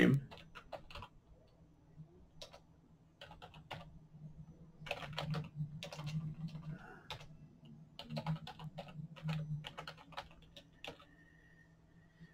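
Typing on a computer keyboard: irregular short runs of keystrokes separated by brief pauses.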